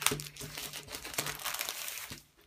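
Crinkling of a thin plastic packaging bag as a Panini sticker starter pack is opened and the album is slid out of it, a run of small irregular crackles.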